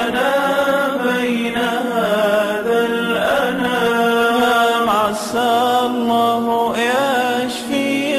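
Nasheed singing: voices chanting a wordless, gliding melody over a steady held low drone.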